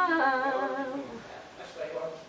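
A woman humming a wordless melody: a held note that slides down and fades about a second in, then a brief, softer phrase near the end.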